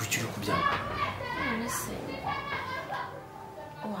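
Speech only: a fairly high-pitched voice talking, ending in a short exclamation, "No!", near the end.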